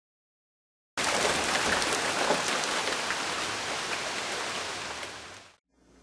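A steady rushing noise, like rain or rushing water, that starts abruptly about a second in and fades out near the end.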